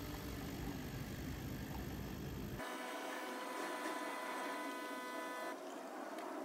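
Countertop coffee machine brewing coffee into a glass pitcher of milk, running with a steady mechanical hum and whine that stops near the end as the brew finishes.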